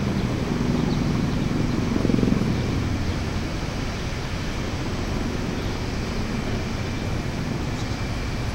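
Steady low rumble of outdoor city ambience, swelling briefly about two seconds in.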